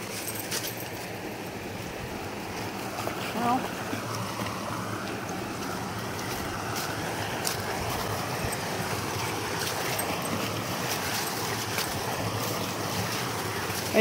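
Shallow creek running over rocks, a steady rushing. A brief voice-like sound comes about three and a half seconds in.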